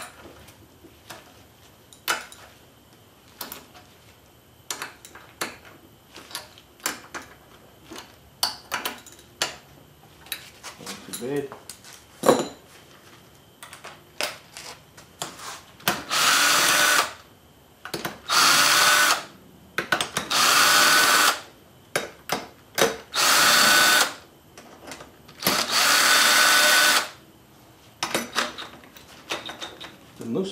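Cordless drill with a socket spinning out the cylinder head bolts of a Briggs & Stratton engine, in five short runs of about a second each in the second half. Before that there is a series of sharp clicks and knocks from a ratchet and socket on the bolts.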